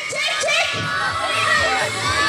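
A group of children shouting and calling out together, many high voices overlapping, as they pull in a tug-of-war game.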